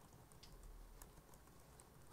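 Faint typing on a computer keyboard: scattered, irregular key clicks.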